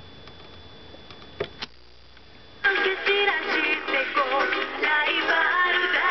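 Two sharp clicks of the Sony TC-40 Tapecorder's keys, then, a little under three seconds in, music with singing starts suddenly, played back from a cassette on the recorder.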